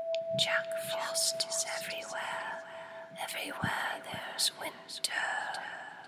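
A whispered voice, its words not clear, over one long held musical tone that stops about five seconds in.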